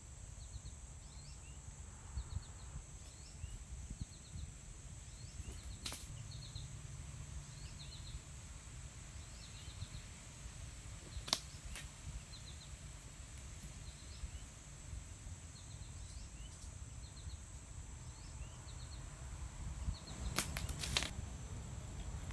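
Outdoor summer ambience: insects droning steadily on a high thin note with short repeated chirps, over a faint low rumble. A few sharp clicks stand out, about six seconds in, again about eleven seconds in, and a small cluster near the end.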